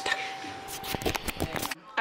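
Rustling handling noise with a quick run of small clicks and knocks in the second half, over a faint steady tone, breaking off into a moment of silence near the end.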